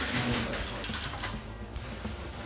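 A brief run of quick mechanical clicks about a second in, over other background sound.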